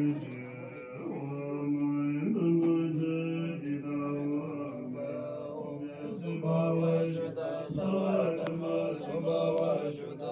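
Buddhist monks chanting prayers from their texts: a low recitation held on steady notes, shifting pitch every second or so.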